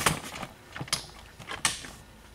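A few sharp knocks and clatters of hard objects being handled on a shelf, the loudest at the start, more about a second in and again shortly after.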